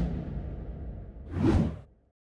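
Whoosh sound effects for an animated end-card graphic: a rushing swell fading away over a low rumble, then a second whoosh about a second and a half in.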